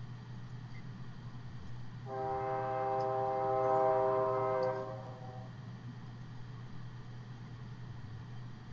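A long, steady horn-like tone with many overtones, held about three seconds from about two seconds in, over a constant low electrical hum.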